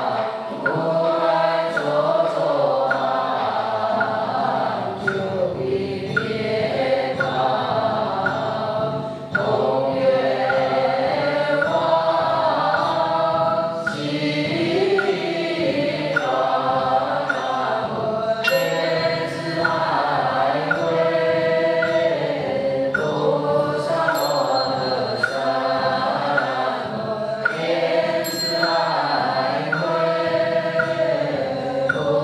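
Buddhist liturgical chanting by voices in sustained, slowly shifting tones, with sharp knocks throughout and a brief high ringing tone heard three times in the second half.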